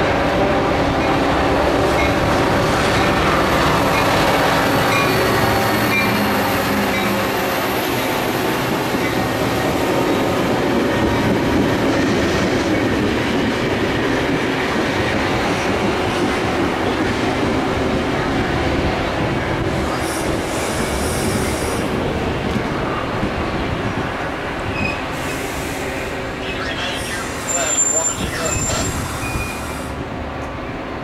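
Metra commuter train, a diesel locomotive pulling bilevel gallery cars, rolling past at close range and slowing to a stop at the station. The locomotive's engine is heard at first, then the steady rumble of the cars, and a brief high squeal comes near the end as the train halts.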